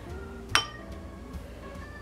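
A metal spoon clinks once against china dishware about half a second in, a sharp tap with a short ring. Faint background music runs underneath.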